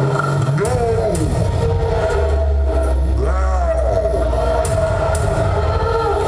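A voice through a concert PA making drawn-out calls that rise and fall, twice, over a steady low drone and amplifier hum from the stage.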